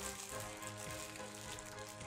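Soft background music with sustained, held notes, under faint rustling of small toy packaging being handled.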